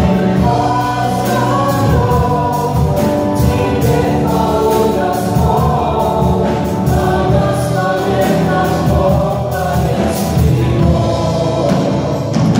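A live worship song: several voices singing together over a band of guitars and drums with a steady beat, through the sound system.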